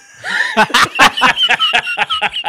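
Two men laughing together in a run of quick pulses, about five a second.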